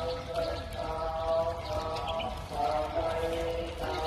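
Chanting in long held notes by a low-pitched voice, each note sustained for a second or more before moving to another pitch, over a low steady rumble.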